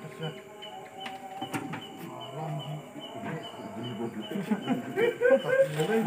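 Men's voices talking indistinctly, getting louder and busier toward the end, with a faint high chirp repeating steadily underneath.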